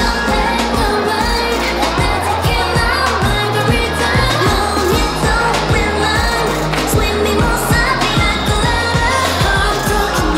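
A pop song with singing over a steady beat, played for the dancers.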